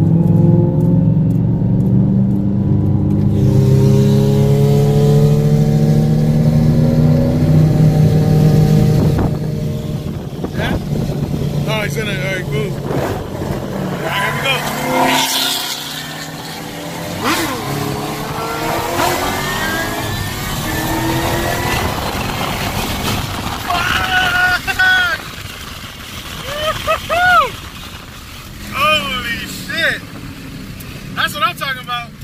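2014 Shelby GT500's supercharged V8 heard from inside the cabin, accelerating with its pitch rising steadily for about nine seconds. It then backs off and the car cruises more quietly, with short higher rising-and-falling sounds near the end.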